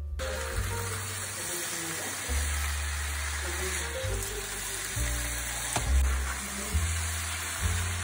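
Potato strips frying in oil in a pan, a steady sizzle, stirred with a spatula now and then. Background music with low bass notes plays under it.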